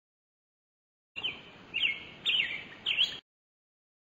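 Bird chirping: four short chirps, each falling in pitch, over a soft hiss, starting about a second in and cutting off suddenly.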